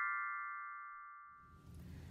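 A bell-like chime jingle ringing out, several held notes fading away steadily over about a second and a half, then faint room tone.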